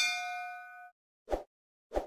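A bell-like ding sound effect rings out with several clear tones and fades over about a second as the notification bell is tapped. About half a second later come two short, dull pops about half a second apart.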